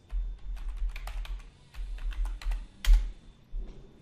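Typing on a computer keyboard: a run of irregular key clicks, each with a dull thump on the desk. The loudest keystroke comes near three seconds in.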